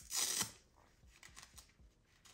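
LED face mask's head strap pulled tighter behind the head: a brief rubbing, scraping noise near the start, then faint rustling of the strap against hair.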